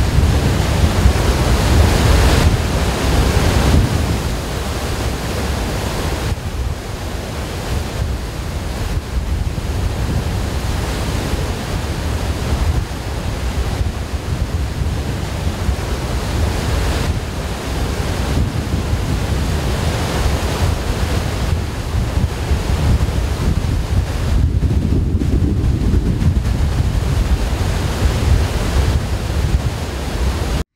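Water pouring from a large dam's spillway outlets: a steady, loud rush of falling and churning water, loudest in the first few seconds and then even.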